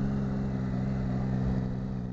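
Triumph motorcycle engine running at a steady speed, with a low rumble of wind and road noise beneath it.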